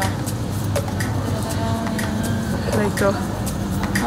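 Steady low hum of supermarket glass-door freezer cabinets running, under an even background noise, with a few brief voices and light clicks.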